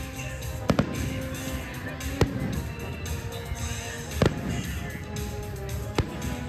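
Aerial fireworks shells bursting with sharp bangs over music. There is a quick pair of bangs under a second in, then single bangs at about two and four seconds.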